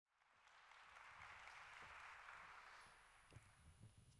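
Faint audience applause in a hall, dying away about three seconds in, followed by a couple of soft knocks.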